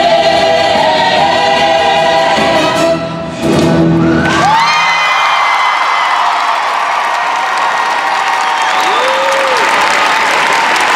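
A stage-musical cast sings with a backing track and ends on a held note about four and a half seconds in. Audience applause and cheering rise under it and carry on to the end.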